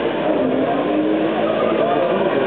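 A car doing a burnout: its engine is held at high revs while the spinning tyres squeal on the tarmac, making a steady, loud din with long, slowly wavering tones in it.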